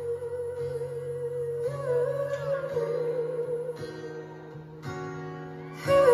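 Live ballad music: a singer holds long wordless notes with vibrato over sustained guitar and keyboard chords. It softens about two-thirds of the way through, then swells louder near the end.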